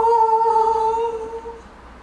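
A single held vocal note, hummed or sung at one steady pitch like a fanfare 'aah' for a reveal, fading and stopping about a second and a half in.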